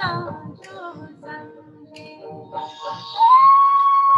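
Hindi devotional meditation song playing back, with a sung phrase ending in the first second. About three seconds in, a long held note glides up and holds steady.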